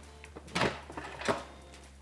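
Instant Pot's lid being set on and locked into place on the pressure cooker: a light tick, then two short plastic-and-metal clunks, about half a second in and just over a second in.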